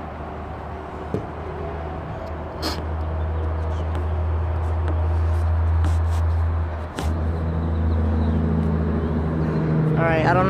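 A steady low drone that grows louder over the first half, dips briefly about seven seconds in and then carries on, with a few scattered clicks.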